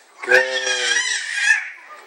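A drawn-out voice sound without clear words, lasting about a second and a half.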